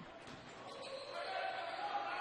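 Basketball game sound in a gym: a ball bouncing on the hardwood court under a low hum of the hall, growing slightly louder toward the end.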